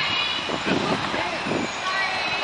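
Voices of people on a busy city street over steady traffic noise, with a high-pitched voice at the start and lower voices after it.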